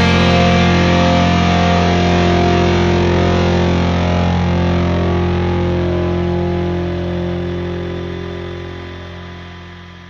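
Background music: a distorted electric guitar chord rings out and fades slowly away.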